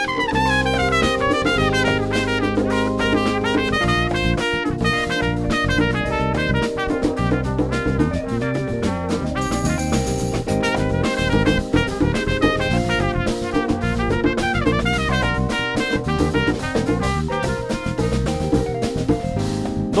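Trumpet playing a solo in fast runs of notes, backed by a drum kit and the rest of a live band.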